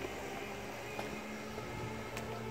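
Quiet street background: a faint, steady low hum with no distinct events.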